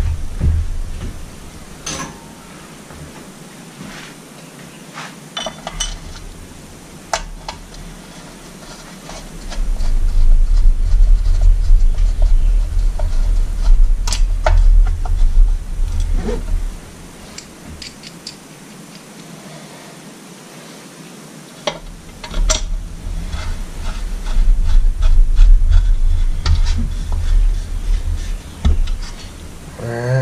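Screws being driven by hand into an outboard top cowl: small metal clicks and clinks of screws and screwdriver. There are two long stretches of loud low rumbling handling noise, one about a third of the way in and one after a short lull.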